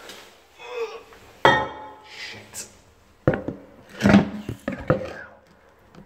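Several sharp knocks and clatters in a small room, the loudest about a second and a half in and around four seconds in, with faint voices between them.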